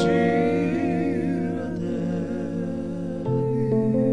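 A man's voice holds a sung note with vibrato that fades away over the first couple of seconds, over sustained electric keyboard chords. A new keyboard chord with a deep bass note comes in about three seconds in.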